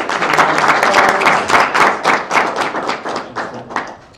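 Audience applauding: many overlapping claps, loudest in the first couple of seconds and dying away near the end.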